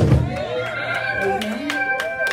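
Live church worship music with guitar and a beat, over which a voice cries out in high, wavering, wordless calls, loudest right at the start.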